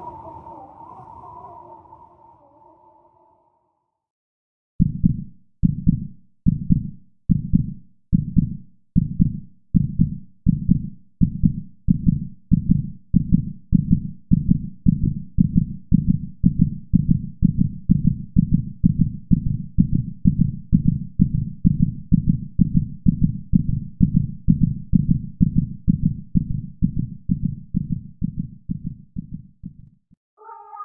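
Heartbeat, deep single thumps starting about five seconds in, a little under two a second at first and quickening to over two a second. Before them a fading tone dies away into a moment of silence.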